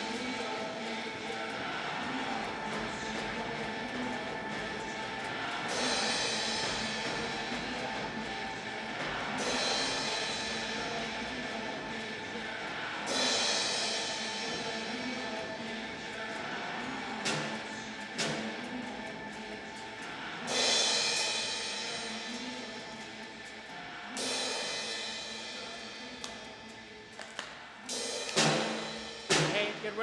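Heavy rock song played back for the band to perform to, with a full drum kit and a loud cymbal crash about every three to four seconds. Near the end the song dies away and a few separate knocks follow as the loop comes round.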